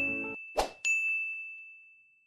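Notification-style ding sound effects. A chime is still ringing as the music under it stops, a short swoosh follows about half a second in, and then a second bright ding rings out and fades away.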